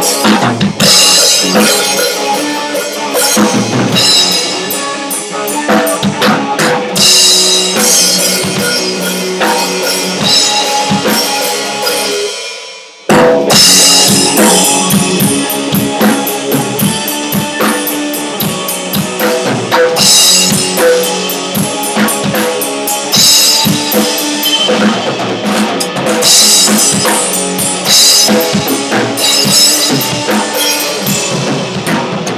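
Drum kit and electric guitar playing an instrumental rock section together. About twelve seconds in the playing fades and stops for a moment, then the band comes back in at full volume.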